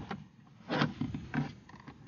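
A few short, light knocks and rubs of hard plastic as the car's instrument-cluster hood, just unclipped from the dashboard, is handled. The loudest knock comes just under a second in.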